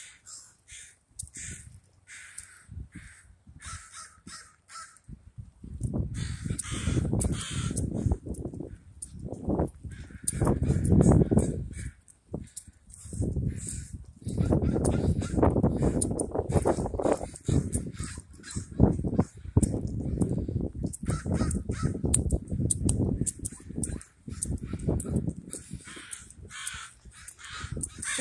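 A large flock of crows cawing over and over, many birds calling at once. A loud low rumble comes and goes from about five seconds in.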